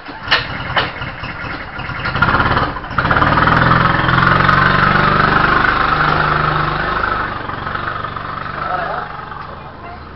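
Rental go-kart engine starting and running at idle, with two sharp knocks in the first second. The engine builds up over the first few seconds, runs loud and steady, then gradually fades.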